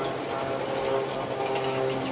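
Container freight train rolling across a steel truss viaduct: a steady mechanical hum with faint ticking from the wheels on the rails.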